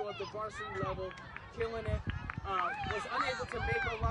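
Indistinct chatter of several people talking over one another, with no single clear speaker.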